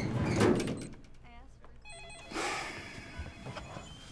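A short electronic trilling ring about a second in, followed near the middle by a brief sliding rush of noise.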